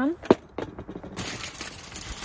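A sharp tap, then light rattling and the crinkling rustle of aluminium foil as Cajun seasoning is shaken from a can onto a salmon fillet lying in foil. The crinkling is loudest near the end.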